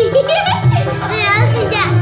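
Indian folk music with a steady drum beat, with a high voice wavering up and down over it.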